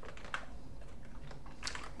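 A few separate computer keyboard key presses, spaced out, as a web address is copied and pasted into a terminal.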